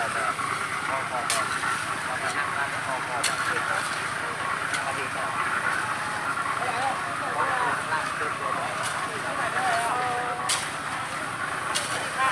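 Small concrete mixer turning, with gravel and cement churning in its drum. Shovels clink and scrape on gravel every second or two.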